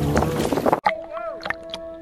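Wind on the microphone and sea water slapping around a shark cage beside a boat, then an abrupt change about a second in to muffled underwater sound with bubbling as the view switches to a submerged GoPro.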